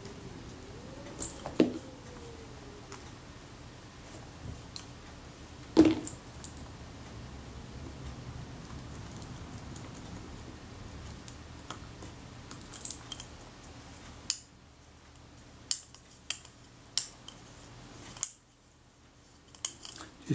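Small metal clicks and taps of a screwdriver and lens parts as the mount screws go back into a Schneider Retina Xenon lens, scattered and irregular, with two sharper clicks early on and a run of quick ticks later. A faint steady background hum stops about fourteen seconds in.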